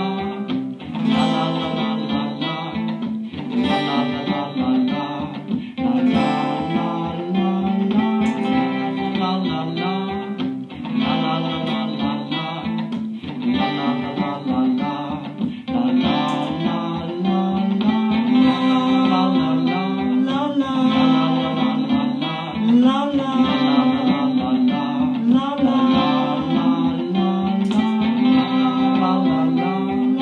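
Looped guitar jam: an acoustic-electric guitar played through a Line 6 POD HD500X looper, its layered parts repeating in a cycle of about two and a half seconds, with looped wordless "la la" vocal harmonies over it.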